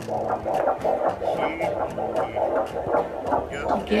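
Handheld fetal Doppler picking up an unborn baby's heartbeat: a fast, even pulsing beat, close to three beats a second, over a steady hum.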